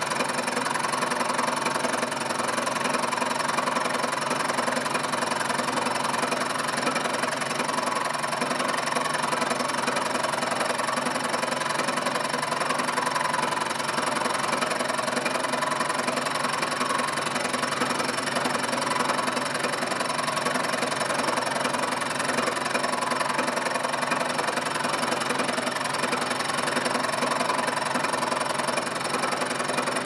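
Milling machine taking a steady end-mill cut across the face of a metal column: continuous motor and gear tones under the cutter's noise, at an even level.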